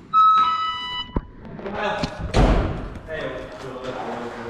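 A two-note electronic beep, a high note then a lower one, in the first second. It is followed by a sharp click, a heavy thump of the camera being handled, and a man laughing.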